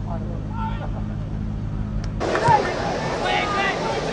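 Steady low hum with faint, distant voices, cutting off abruptly about two seconds in to live soccer-match ambience: crowd noise with shouted voices.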